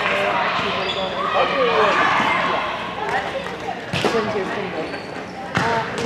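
Gym chatter of players' and spectators' voices, with two sharp ball smacks about four seconds and five and a half seconds in, typical of a volleyball being hit or bounced on a hard court.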